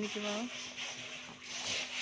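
A brief woman's voice at the start, then a rough rubbing, rustling noise that swells and fades several times.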